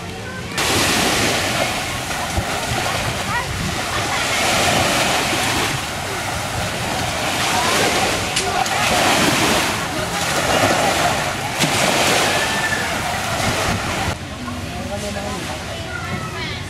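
Sea water washing and sloshing around people standing waist-deep in shallow surf, a steady rushing noise that swells and eases every few seconds, with faint voices over it.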